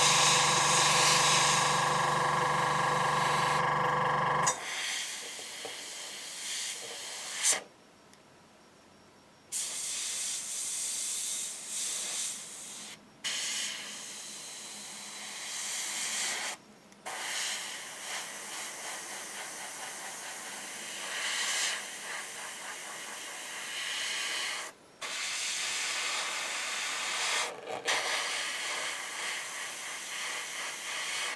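An airbrush spraying dark green paint, hissing in stretches with several short breaks as the trigger is let go and pressed again. For the first four seconds or so a steady motor hum runs under the hiss, then cuts off.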